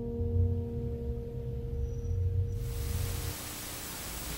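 The last chord of an acoustic guitar ringing out and fading over a low rumble. About two and a half seconds in, a steady hiss of video static begins.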